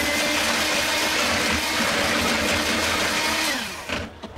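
Electric hand mixer with twin wire beaters running steadily as it whips a thin egg-and-milk mixture in a plastic bowl. Near the end it is switched off and the motor winds down.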